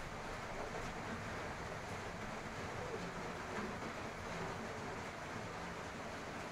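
Turmeric-and-salt-coated hard-boiled eggs frying in hot oil in an aluminium kadai, a steady sizzling hiss.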